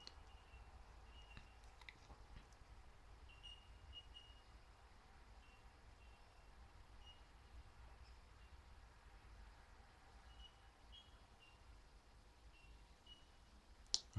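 Near silence: room tone with a low steady hum and a few faint, short high chirps.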